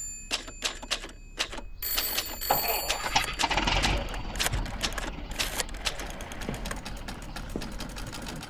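A table telephone's electric bell rings briefly about two seconds in, over a run of rapid mechanical clicking and clattering from old household machines.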